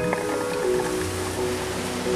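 Background music with held tones, over the rushing hiss of ocean surf that rises in at the start.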